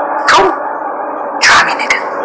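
Three short, sharp bursts over a steady low background: one about a third of a second in and two close together near the end, the sounds of a sudden physical scuffle between two people breaking out.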